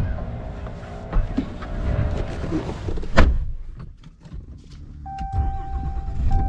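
Rustling and knocks of someone climbing into a pickup's cab over a low rumble, with a loud thud about three seconds in as the driver's door shuts. About five seconds in, a steady electronic warning tone from the truck starts and holds, breaking briefly near the end.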